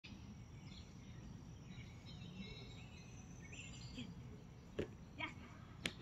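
Faint outdoor background noise with songbirds chirping in short bursts, and a few sharp clicks or taps in the last second and a half.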